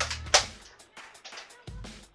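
A single sharp snap about a third of a second in from a Nerf FlipFury blaster firing a foam dart, over background music.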